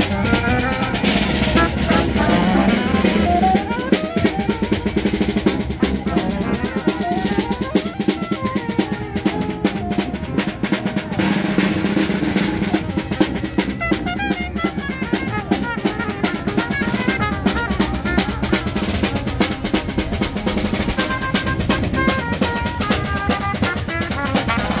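A street brass band playing live: a drummer keeps a busy, fast beat on a drum with a mounted cymbal, under a sousaphone bass line and trumpet, trombone and saxophones playing the tune.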